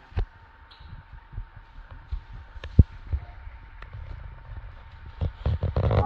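Handling noise from a camera being picked up and moved: scattered low thumps and a few sharp knocks, with one strong thump near the middle and a denser cluster near the end.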